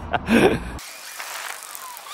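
A man laughs briefly. After a sudden cut, a faint, thin hiss of street ambience follows.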